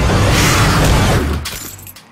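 A loud shattering crash that dies away about a second and a half in.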